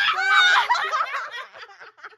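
Several people laughing at once, their voices overlapping, dying away after about a second and a half.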